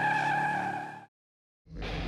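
The tail of a TV logo jingle: a held electronic chord that fades out about a second in, then half a second of dead silence before music starts up again near the end.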